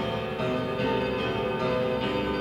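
Live band music in a spiritual-jazz vein: dense, sustained ringing chords with many held notes layered together, keyboards to the fore.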